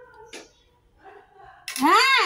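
A cat meows once near the end, a single loud call that rises and then falls in pitch. There is a short click about a third of a second in.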